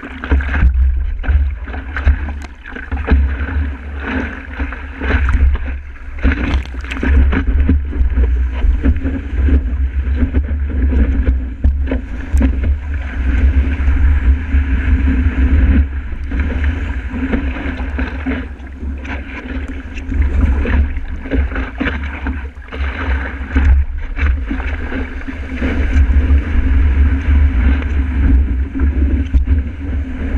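Wind buffeting a board-mounted camera's microphone in a heavy low rumble, over the rushing and splashing of breaking surf around a stand-up paddleboard riding a wave.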